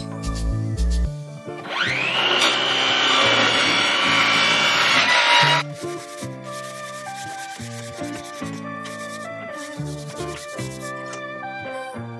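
Sanding on a quarter-inch birch plywood panel: a steady, gritty rasp that starts a couple of seconds in, lasts about four seconds and stops abruptly, over background music.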